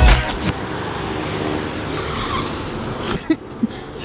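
The intro music cuts off in the first half second, followed by a steady car-like rushing noise, with two short squeaky clicks about three seconds in.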